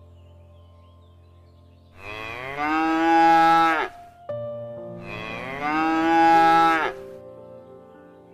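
Cow mooing twice: two long moos of about two seconds each, close together, each falling in pitch as it ends.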